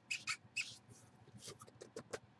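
Faint scratching and rubbing noises: a handful of quick, short strokes.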